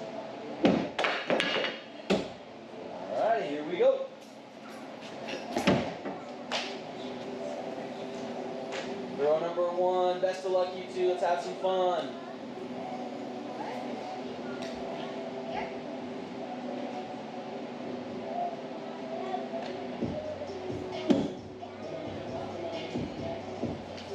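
Hatchets thrown at wooden targets, striking the boards with sharp knocks: several hits in the first two seconds, more at about six seconds and one near the end. Radio music plays in the background of a large, echoing hall.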